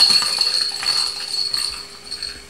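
Hollow plastic toy ball with a bell inside jingling as it rolls and knocks on the tile floor, dying away near the end. A steady high-pitched whine runs underneath throughout.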